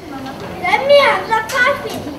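Young children's voices talking in short, indistinct bursts.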